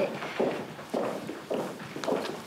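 Footsteps on a hard corridor floor, about two steps a second.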